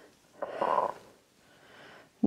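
A woman's short, forceful breath out through the mouth, about half a second long and starting about half a second in, the breathing of effort during a dumbbell press; a fainter breath follows near the end.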